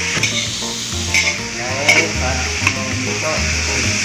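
Pork cubes frying in oil in a large metal wok, sizzling steadily, while a metal spatula stirs them, scraping and clacking against the pan a few times.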